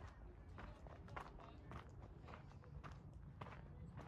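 Footsteps on sandy dirt at a steady walking pace, just under two steps a second.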